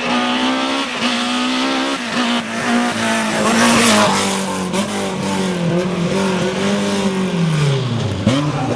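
BMW M3 Group A race car's inline-four engine at high revs, holding a steady pitch, easing slightly lower after the middle, then dropping sharply near the end as the car slows. A short burst of noise about halfway through fits tyre squeal.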